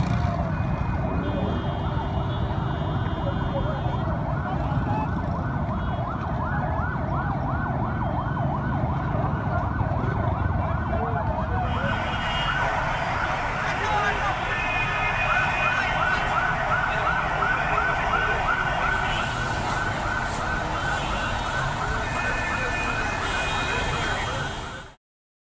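Emergency vehicle sirens wailing in fast, repeated pitch sweeps over busy street noise and crowd voices.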